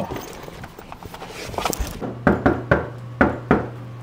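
Knocking on a door: three quick knocks, then two more, in a small room with a steady low hum. Before the knocks there are light clicks and handling noise.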